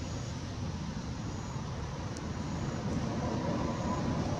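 Steady low rumble of outdoor background noise, without any distinct event.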